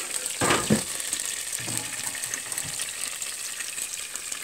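Freshly air-fried bacon sizzling and crackling in a pulled-out air fryer basket, with a short clatter about half a second in.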